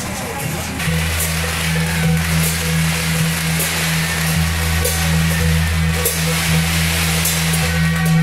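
Beiguan procession percussion: hand cymbals and a gong struck at irregular intervals over a steady low hum that sets in about a second in.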